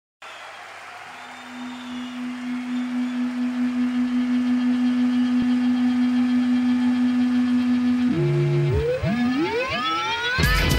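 Electronic music intro: a single held synthesizer tone swells in over the first few seconds and sustains with a slight pulse. From about eight seconds in, several tones sweep upward in pitch, building into the start of the track.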